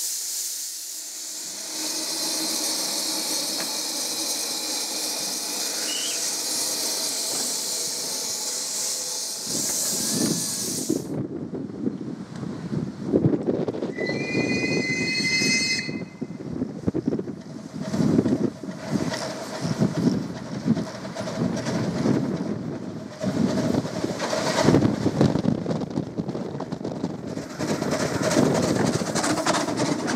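Steam locomotive Bunty, a narrow-gauge engine built by Neville Smith and Alan Keef in 2010, hisses steadily as steam blows from its open cylinder drain cocks. After about ten seconds it is heard working a train, with a rapid, uneven beat of exhaust chuffs. A brief high two-tone whistle sounds about halfway through.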